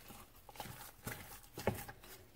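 Wooden spatula beating thick choux pastry dough in a stainless steel saucepan while eggs are worked in: a few irregular soft knocks and slaps of the spatula against the pan and the sticky paste, the loudest a little before the end.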